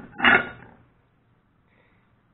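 Cut metal plates clanking against a metal workbench as they are handled: a sharp clank, then a louder one a fraction of a second in.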